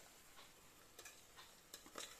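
Near silence broken by about five faint clicks of a spatula against the side of an aluminium pressure cooker as mutton and fried onions are stirred.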